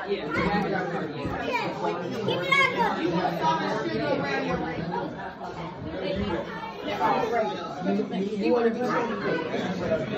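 Several people talking over one another at once, overlapping chatter with no single clear voice.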